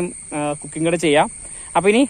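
A man talking in short phrases over a steady, high-pitched drone of insects that carries on unbroken between his words.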